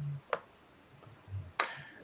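A single short click about a third of a second in: a die being set down on a tabletop.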